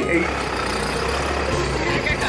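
Steady outdoor background noise: an even hiss over a constant low rumble.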